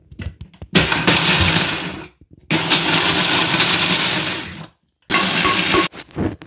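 Electric mixer grinder running in three short bursts with brief pauses between them, coarsely grinding whole dry-roasted spices (cumin, ajwain, coriander seed, black pepper, fennel, cardamom) into pickle masala.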